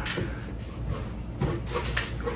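Hands rummaging inside a box of packaged vinyl figures, rubbing and scraping against the boxes as they feel around for more figures in plastic protectors.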